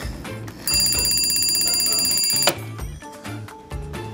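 An alarm clock ringing in a rapid, high trill for about two seconds, starting just under a second in and cutting off suddenly, over background music with a steady beat.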